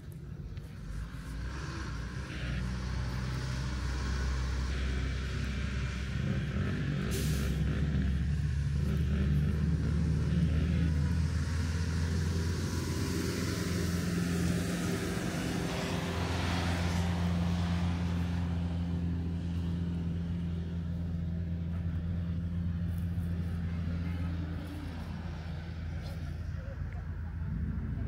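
A motor vehicle's engine running, a steady low drone that shifts in pitch about 8 and 16 seconds in. A brief hiss comes about 7 seconds in.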